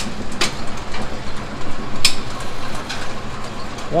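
Brunswick pinsetter, a converted Model A, running through a cycle: a steady mechanical clatter from its belt drive, gearbox and linkages, with sharp clanks about half a second in and again about two seconds in.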